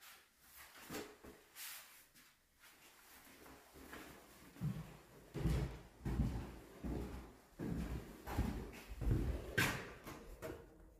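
Footsteps and low thumps of someone walking through an empty room while holding a phone, starting about halfway through and coming roughly once or twice a second, with a sharper knock near the end.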